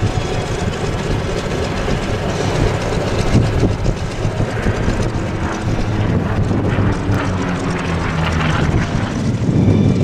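F4U-4 Corsair flying overhead, its 18-cylinder Pratt & Whitney R-2800 radial engine and propeller giving a steady, loud drone.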